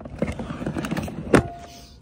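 Gear being handled and rummaged through in a storage box: a rustling scrape with many small clicks, then a sharp knock with a short ring a little past halfway.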